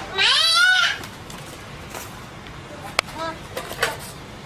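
A cat's long, loud meow in the first second, its pitch rising and then falling. About three seconds in comes a sharp click, then a short, fainter call.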